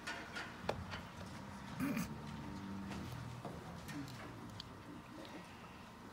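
Quiet auditorium room sound between tunes: scattered small clicks and shuffles with a low murmur, and a brief vocal sound about two seconds in.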